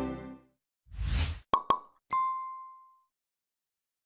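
Logo sting sound effect: the last of the advert's music dies away, then a short whoosh about a second in, two quick pops, and a bright chime ding that rings out and fades.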